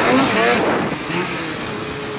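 Polaris Axys RMK two-stroke snowmobile running over snow, with wind and track noise on the microphone. A voice calls out over it in the first second, and the sound eases off after that.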